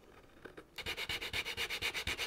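Rapid, even back-and-forth rubbing or scraping strokes on a hard surface, about eight a second, starting under a second in after a short quiet spell.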